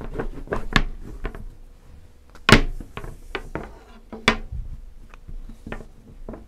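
A long, thin wooden rolling pin (oklava) rolling, knocking and clicking on a hard floured worktop as a thin sheet of dough is wound around it and spread out. The knocks come irregularly, with the loudest about two and a half seconds in and again a little past four seconds.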